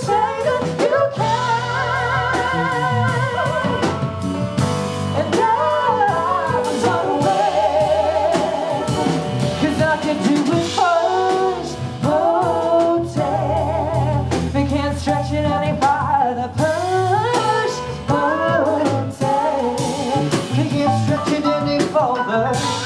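Female and male vocalists scat singing in turn, quick wordless lines that bend and waver in pitch, over a live jazz combo of drum kit, electric bass and piano.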